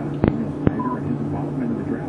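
Two sharp clicks and then a short electronic beep inside a police patrol car, over a steady low hum and faint talk-radio voices.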